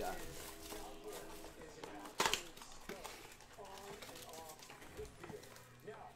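Handling noise and a single sharp rip about two seconds in as a shrink-wrapped cardboard blaster box of football cards is torn open and its packs taken out.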